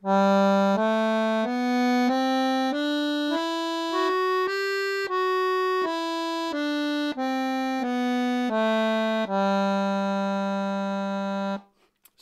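Sonola piano accordion playing a one-octave G major scale on its treble keyboard: evenly paced single notes rising from low G up to the G an octave above, then back down. It ends on a long held low G.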